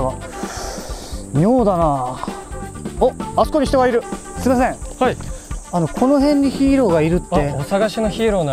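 Japanese spoken dialogue between two men, with a steady, high-pitched insect drone underneath.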